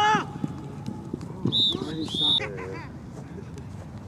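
A sharp shout, then two short, high whistle blasts a little over a second and a half in: a referee's whistle on a flag football field.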